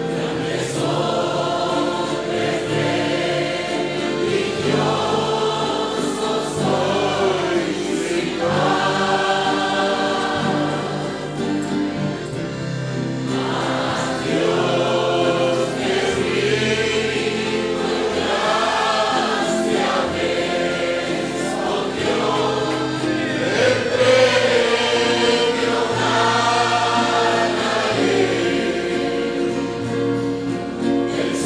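Congregation singing a worship song together, many voices holding long notes over sustained low notes beneath.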